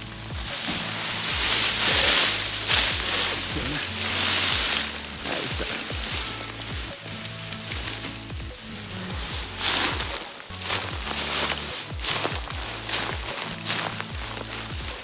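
Dry sugarcane leaves crackling and rustling loudly in repeated bursts as they are handled and trodden, over background music with a low bass line.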